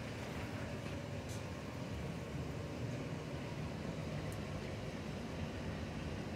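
Drain-cleaning machine running steadily as its cable is drawn back out of a clogged laundry drain: an even, low rumble with a few faint ticks.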